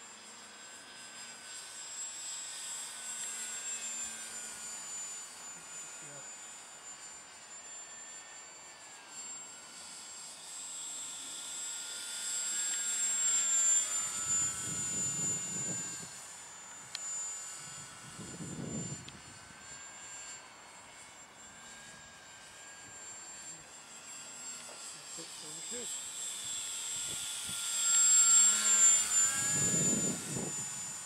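Boeing P-26A Peashooter RC model plane in flight: a high-pitched motor and propeller whine that drifts up and down in pitch and swells as the plane passes, loudest about halfway through and again near the end.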